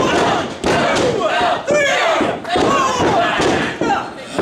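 Spectators shouting and yelling, many voices overlapping loudly, with a few thuds from wrestlers striking and stomping on the ring canvas.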